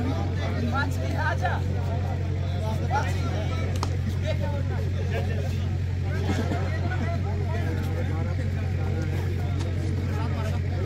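Scattered voices and chatter from players and spectators around a kabaddi court, over a steady low mechanical hum.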